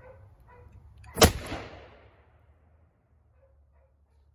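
A .50 caliber matchlock gun firing a single shot about a second in, the report ringing out briefly before it fades.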